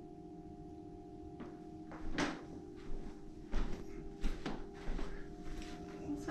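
A hollow interior panel door being swung and handled, giving a series of short knocks and clunks against a faint steady hum.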